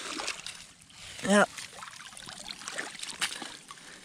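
Shallow creek water trickling while a small waterlogged bike is pulled up out of wet sand and tangled debris, with light scraping and rustling. A short vocal sound comes about a second in.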